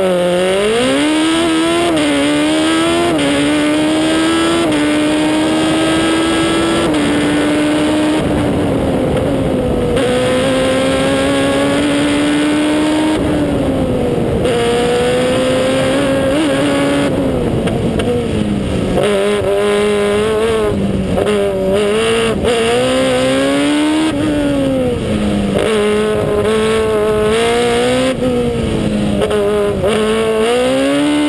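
Single-seater formula race car engine heard from on board, pulling hard away from a standing start. The pitch rises and steps down at each upshift. Later the revs repeatedly fall and climb again as the car brakes, shifts down and accelerates through a run of bends.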